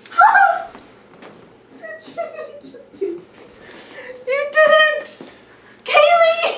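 Young women's high-pitched laughing and squealing in short outbursts, loudest just after the start and again about four and a half seconds in.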